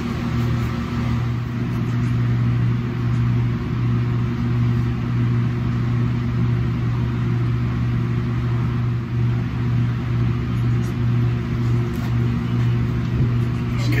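A steady low mechanical hum with a faint hiss above it, holding even throughout.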